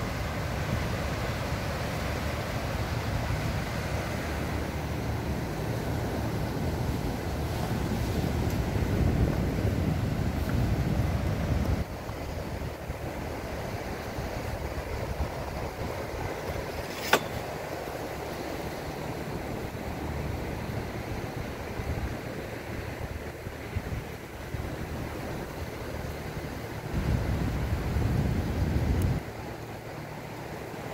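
Wind rumbling on the microphone over the steady wash of surf on a beach. The rumble eases about twelve seconds in and there is one sharp click about seventeen seconds in.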